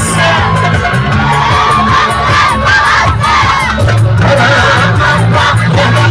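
Loud live band music over a PA: electric guitars, keyboard, bass and drum hits, with a man singing into a microphone and crowd voices mixed in.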